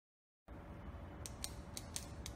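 Intro sound effect for an animated title: a faint low rumble with six quick, sharp clicks about a quarter second apart, starting and stopping abruptly.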